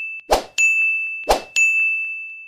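End-card sound effect: a short noisy hit followed by a bright bell-like ding, twice about a second apart, the second ding ringing on.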